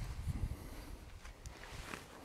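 Low wind rumble on the microphone, fading, with a couple of faint ticks near the end.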